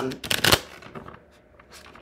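A deck of round tarot cards being shuffled by hand: a quick flurry of card clicks and slaps in the first half second, fading to faint rustling.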